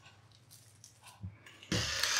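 Salter electric pepper grinder switching on near the end, its small motor giving a steady whirr as it grinds peppercorns. Before that, only a faint tick or two.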